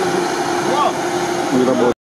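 Steady motor drone holding one constant pitch, with brief voices over it; it cuts off abruptly near the end.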